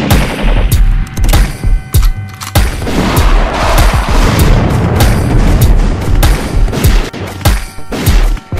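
Hip-hop instrumental with no vocals: heavy, constant bass under a run of sharp, hard-hitting percussive hits at irregular spacing.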